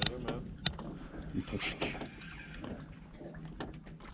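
Spinning reel being cranked as a small cod is reeled up to the boat, with scattered light clicks and faint voices in the background.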